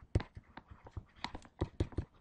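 Stylus pen tapping and scratching on a tablet screen while handwriting, an irregular run of small sharp clicks, several a second.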